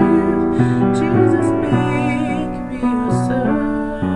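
A slow hymn with instrumental accompaniment and a woman singing, her held notes wavering with vibrato.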